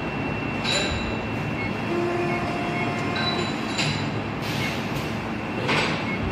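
Haitian plastic injection moulding machine running: a steady machine rumble with several short hisses, about a second in, near four seconds and near the end.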